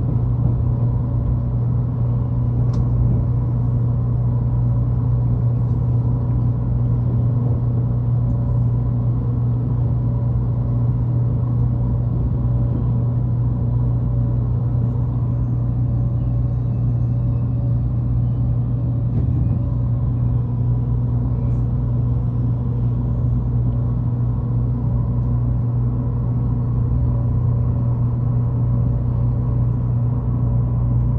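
A train's steady low mechanical hum at a station: a deep, even drone with a few fainter, higher steady tones, unchanging throughout.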